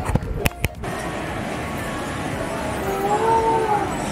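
Amusement-arcade din from crane-game machines: a steady wash of machine noise, with a few sharp clicks in the first second and a short electronic tone that rises and falls about three seconds in.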